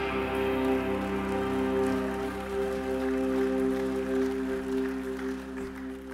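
A worship band's instruments holding one sustained chord at the end of a song, steady and slowly fading away.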